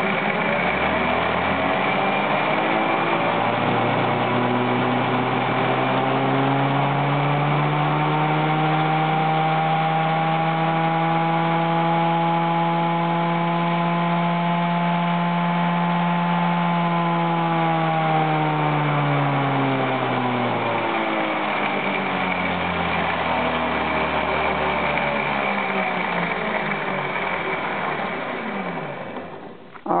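A Minarelli scooter engine's flywheel and ignition spun on a bench rig, run up from low speed to about 10,000 rpm, held there for several seconds, then slowed back down, its pitch rising, holding and falling with the speed. The rig is checking the CDI's timing retard with a capacitor added between pickup coil and ground.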